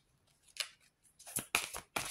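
Oracle cards being shuffled by hand: one short crisp stroke about half a second in, then a quick run of sharp card strokes from about a second and a half in.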